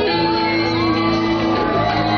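Live rock band playing: electric guitars holding sustained notes, with a shouted vocal gliding over them.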